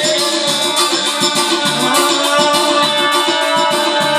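Four-string electric bass guitar being plucked along with music that has a quick, steady rattling beat and a singing voice.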